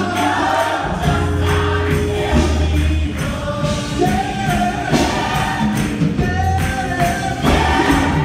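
A large gospel choir singing loudly in full harmony, accompanied by held bass notes and percussion hits.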